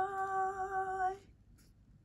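A woman's voice holding one steady, sung-out note, the drawn-out end of a goodbye, which stops about a second in and leaves faint room tone.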